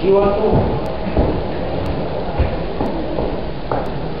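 A man says one short word, then a steady noisy background with a few dull low thumps.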